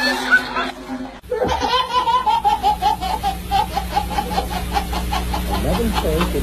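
Someone laughing hard in a long run of quick, high-pitched bursts, about four or five a second, starting just over a second in after a short break.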